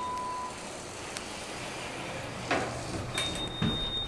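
Dover hydraulic passenger elevator arriving and opening: a steady electronic arrival tone ends just after the start, then the doors slide open with a soft rush. A knock comes about two and a half seconds in, and a high steady beep begins near the end.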